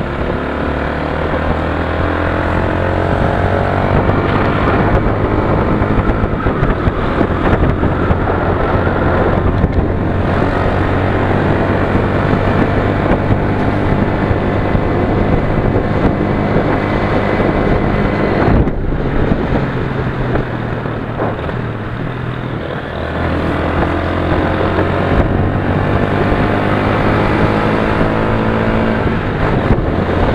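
Motorcycle engine running under way, rising in pitch as it accelerates through the first few seconds. It drops out for a moment a little past the middle, runs lower for a few seconds, then climbs again as it pulls away.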